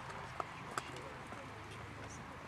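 A horse trotting on arena sand, its hoofbeats faint, with two sharp clicks in the first second.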